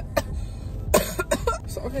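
Several short breathy vocal bursts from a woman, the loudest about halfway through, then the start of speech near the end.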